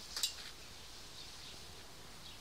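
Quiet outdoor ambience: a brief scratchy rustle just after the start, then a few faint, short high chirps over a low background hiss.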